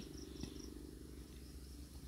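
Faint background insect chirping, a high-pitched pulse repeated in quick succession near the start, over a low steady hum.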